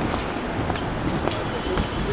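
Busy street ambience: a steady background din with indistinct voices of passers-by and a few short clicks.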